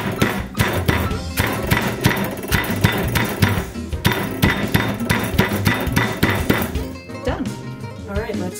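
Boneless chicken thighs being pounded flat inside a plastic bag on a counter: a fast run of thuds, about three to four blows a second, that stops shortly before the end. Background music plays underneath.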